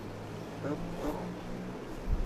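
A steady low hum from a running motor vehicle engine.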